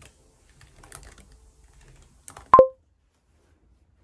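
Typing on a laptop keyboard: soft, uneven key clicks. About two and a half seconds in, a single short, loud beep.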